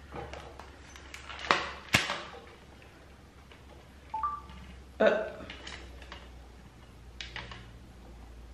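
Sharp clicks and knocks from handling something close to the microphone. The loudest two come about half a second apart, just under two seconds in, and a short electronic two-tone beep sounds about four seconds in.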